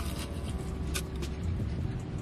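Low steady rumble of a car's idling engine heard inside the cabin, with a couple of faint soft clicks about a second in.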